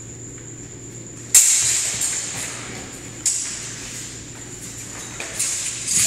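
Practice swords, a longsword and an arming sword, clashing in sparring: a loud sharp strike with a ringing, echoing tail about a second in, a second strike about two seconds later, then a quicker run of smaller knocks near the end. A steady low hum lies underneath.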